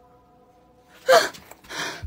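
A woman's sharp, loud gasp about a second in, followed by a shorter breathy intake of breath. The first second is quiet.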